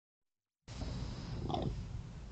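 Raccoons churring close to a trail camera's microphone: a low, purring rumble starts about two-thirds of a second in, with a brief higher call about one and a half seconds in.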